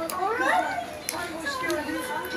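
Young children's voices, high-pitched chatter and play sounds with no clear words, including a rising cry about half a second in.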